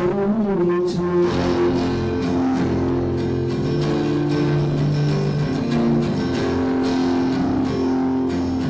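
Acoustic guitar played live, its chords ringing on and changing every second or so in a steady pattern.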